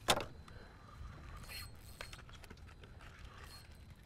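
Spinning rod being cast: a brief swish right at the start, then a few faint metallic clicks from the spinning reel over low steady background noise.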